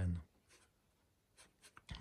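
Fingertips handling a synthesizer knob cap and the panel around it: a few faint scrapes and clicks in the second second, the sharpest just before the end.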